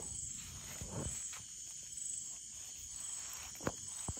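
Steady high-pitched chirring of night insects, crickets, with soft crinkles and knocks of fish being pushed around on a plastic sack by hand, one sharper knock near the end.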